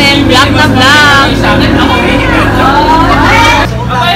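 Several women's voices laughing and calling out loudly together, high and gliding, over a steady low hum; the sound changes abruptly shortly before the end.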